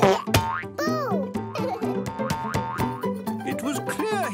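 Bouncy cartoon background music with a springy boing sound effect about a second in, as the character lands in a beanbag.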